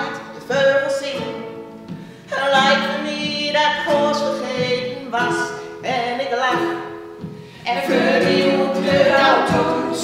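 Three women singing a song together live to a strummed small acoustic string instrument, in phrases with short breaths about two and seven and a half seconds in.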